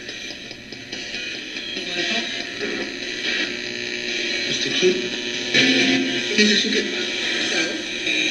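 RadioShack 12-150 radio used as a ghost box, sweeping through stations and played through a guitar amp and effects pedal: steady static broken by split-second scraps of broadcast voices and music, which the listener hears as words such as "Will that help?" and "It's too cute".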